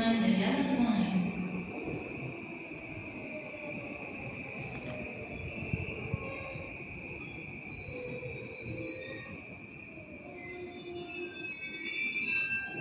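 Railway-side ambience with a steady high-pitched whine running through it, typical of distant train wheels squealing on rails. A woman's voice trails off in the first second or two.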